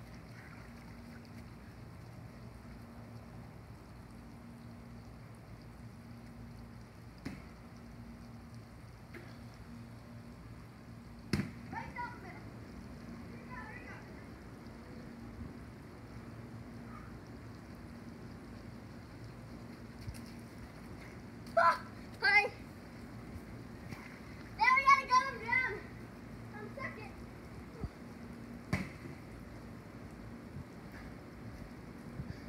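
Steady hiss of water spraying from a water slide's sprinkler arch. A child gives a few short, high yells about two-thirds of the way in, and there is a single sharp click near the middle.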